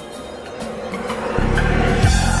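Background music that swells louder, with a deep, steady bass tone coming in loudly about a second and a half in.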